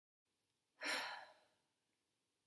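A woman's single audible sigh, about a second in and lasting about half a second, fading away.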